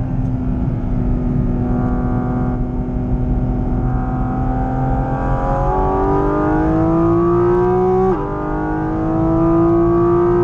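Porsche 718 Cayman GT4 RS's 4.0-litre naturally aspirated flat-six, heard from inside the cabin at speed on track. It holds a steady note for the first half, jumps up in pitch at a gear change, then climbs under full throttle until a sharp drop at an upshift about eight seconds in, after which it climbs again.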